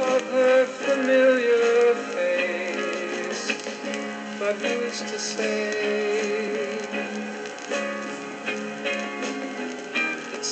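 Demo recording played from an acetate disc on a turntable: a ballad with sustained held notes over the band's accompaniment, sounding thin with almost no bass.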